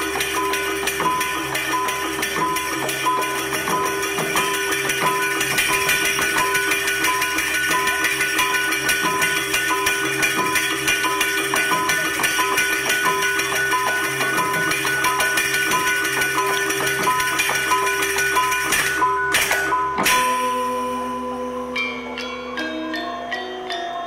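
Balinese gamelan playing a Legong dance piece: dense, shimmering bronze metallophones over a steady metallic beat about twice a second. About 20 s in the ensemble breaks off on a sharp accent and goes on with sparse single notes.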